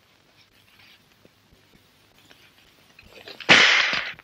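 A booby-trapped book going off with a sudden loud blast near the end, after about three and a half seconds of near silence. The blast lasts about half a second.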